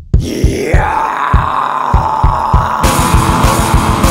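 Blackened doom metal: distorted guitars come in over a steady drum beat just after the start, and the sound gets fuller and brighter about three seconds in.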